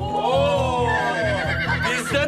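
A horse neighs once in the first second or so, over music with a steady drum beat.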